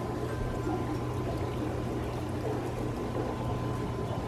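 Air stones bubbling steadily in a goldfish stock tank, a continuous churning of water at the surface, with a steady low hum underneath.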